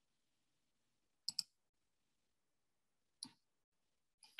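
Two computer mouse clicks against near silence: a quick double click about a second in, and a single click near the end.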